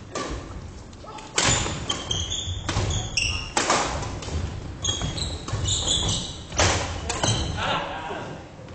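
Badminton rally in a gym hall: rackets strike the shuttlecock several times, each sharp hit echoing. Between the hits, sports shoes squeak briefly on the wooden floor and footsteps thud.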